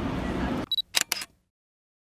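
Station hall ambience, then a camera's short high beep followed by two or three quick shutter clicks. After that the sound cuts to dead silence.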